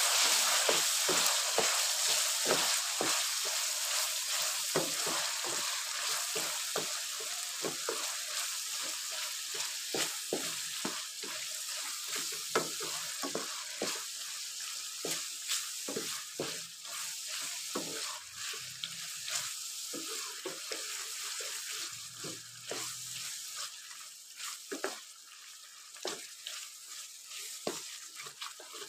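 Meat and tomatoes sizzling as they fry in rendered animal fat in a wok, while a wooden spatula stirs and scrapes against the pan in quick, irregular strokes. The sizzle slowly dies down.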